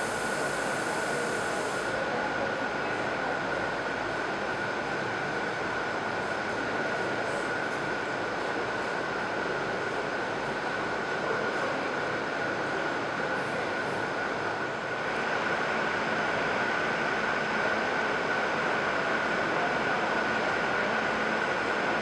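A steady, even machine-like rushing drone with a constant high-pitched whine running through it. It gets slightly louder about fifteen seconds in.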